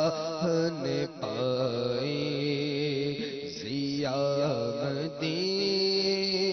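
A man singing a naat (Urdu devotional poem) solo into a microphone, holding long notes with wavering, ornamented turns. He breaks briefly for breath about a second in and again near the end.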